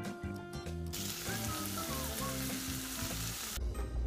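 Chicken fajita mixture sizzling in a frying pan, a steady hiss that starts about a second in and cuts off suddenly near the end. Background music plays throughout.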